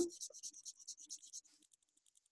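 Marker pen scratching quick short strokes on paper, about eight strokes a second, fading to very faint about one and a half seconds in.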